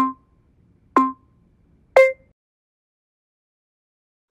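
Interval-timer countdown beeps, one a second: two short beeps at the same pitch, then a third at a different pitch and slightly louder, marking the end of the exercise interval and the switch to rest.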